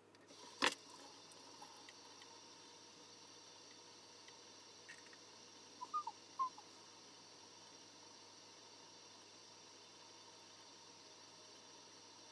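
Faint room tone with a single sharp click about half a second in and two or three brief high chirps about six seconds in. Mouthwash swishing is not distinctly heard.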